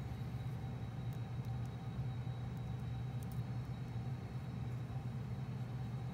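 Steady low background hum, with a few faint, short clicks as the plastic joints of a posable action figure are bent.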